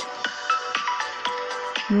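Background music: a soft electronic track with held steady tones and a few short higher notes.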